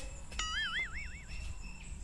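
A short whistle-like tone that wobbles up and down in pitch about four times a second for under a second, starting with a click. It sounds like an added comedy sound effect.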